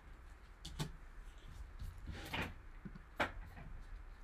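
A few light taps and clicks of rigid plastic trading-card holders being handled and set down on a table.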